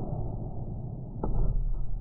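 Low-speed crash test of a 2019 Subaru XV: a low rumble as the car is pulled along the test rail, then a single sharp crash a little past one second in as its front strikes the barrier, followed by a heavier rumble.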